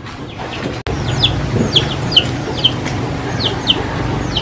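Chickens calling in a yard: a run of short, high, falling peeps, about two a second, starting just after a sudden break in the sound about a second in.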